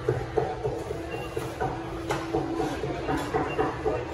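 Busy indoor shop ambience: indistinct background voices with scattered clicks and knocks.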